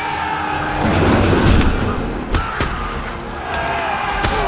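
Action-film battle soundtrack: a dense wash of noise from a charging, shouting crowd over a music score, with a few sharp hits.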